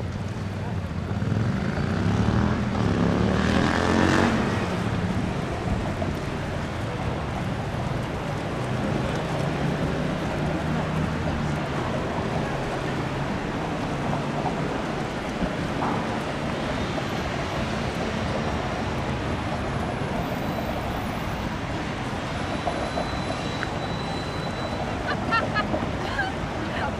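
Steady low drone of an excursion boat's engines as it approaches on the canal, over city background noise. A louder passing rush swells in the first few seconds and peaks about four seconds in.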